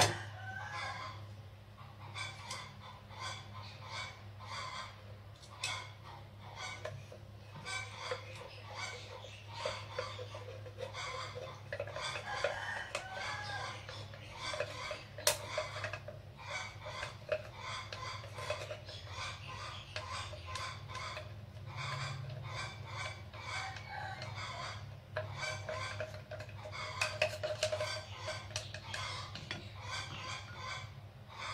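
Chopsticks clicking and scraping against a glass jar and a plate in many short, sharp ticks throughout. Domestic fowl cluck and call now and then in the background, over a steady low hum.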